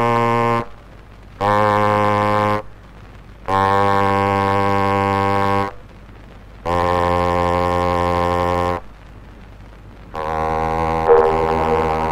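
Cornet playing a series of very low, long-held notes, each about one to two seconds with short breaks between them, stepping gradually lower. It is an acoustic-era 1903 gramophone recording, so the tone is thin and boxy with some surface noise.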